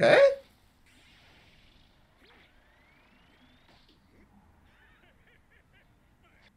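A short, loud spoken "okay" at the very start, then near silence with faint sound from the anime episode playing, including a thin rising tone a little over two seconds in.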